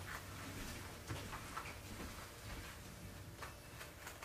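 Scissors snipping faintly and irregularly as they cut an appliqué shape out of fabric backed with ironed-on paper.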